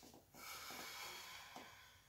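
A person's breath: one noisy exhale lasting about a second, fading out, then faint room tone.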